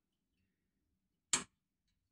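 Near silence, broken once by a short, sharp click about a second and a third in.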